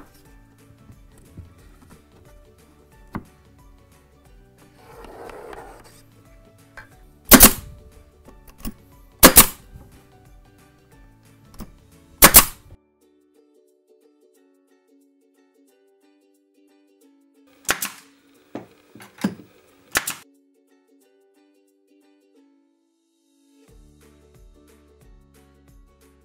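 Pneumatic pin nailer firing pins into hardwood cladding boards: five loud, sharp shots a few seconds apart, with a couple of fainter ones between the last two.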